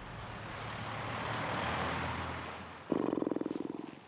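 A car driving past on a wet road, its tyre noise swelling and fading. About three seconds in, a louder fast buzzing rattle starts suddenly and dies away.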